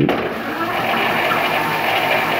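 Bafang BBSHD mid-drive eBike motor running under throttle, driving the chain and rear wheel as the wheel spins up; a steady mechanical whir and drivetrain noise that starts suddenly at the very start.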